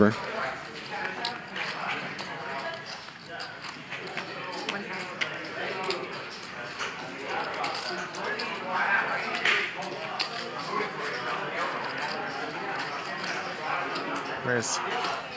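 Quiet, indistinct talk at a poker table, with scattered light clicks of clay poker chips being handled and bet.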